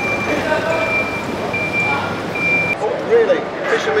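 Forklift reversing alarm beeping: a single high-pitched tone repeating at an even pace, a little over one beep a second, that stops about three seconds in.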